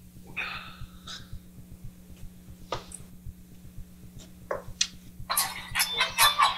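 Low steady hum with a few faint clicks. Near the end, a dense run of clicks and noise starts: the percussive component that librosa's HPSS split off from a machine-generated song, played back over the speakers.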